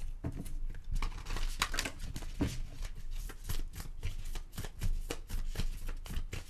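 Oracle cards being shuffled and handled on a tabletop: an irregular run of soft clicks and rustles.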